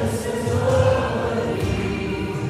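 A live worship song from a small church band: a man sings at the microphone over acoustic guitar, electric piano and drums, with held sung notes.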